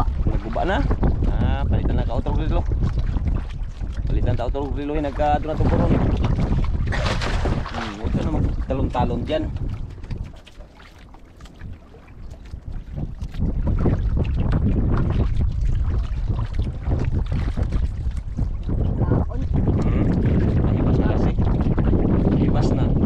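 Wind buffeting the microphone in open water, a constant low rumble. A boy's voice is heard through roughly the first ten seconds, with a brief lull in the wind just after.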